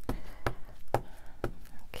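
Light, evenly spaced taps on a hard craft work surface, about two a second, from rubber stamps being handled and set down during stamping.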